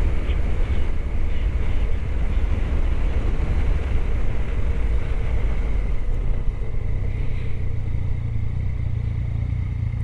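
Motorcycle engine running steadily while riding along, with road and wind noise. About six and a half seconds in the engine note shifts and the level dips slightly.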